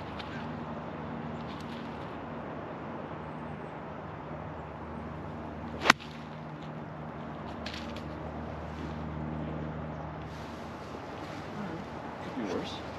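A golf club striking the ball once, a single sharp crack about six seconds in, on an approach shot of about 85 yards. A steady low hum runs underneath.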